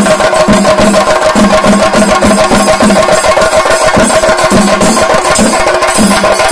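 Chenda drums beaten with sticks in a fast, dense, unbroken roll, accented in a pulse a little over twice a second. Elathalam hand cymbals ring steadily over the drumming.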